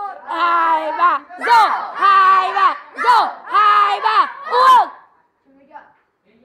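A group of young voices shouting a drinking toast together in unison: a string of loud chanted shouts that break off about five seconds in.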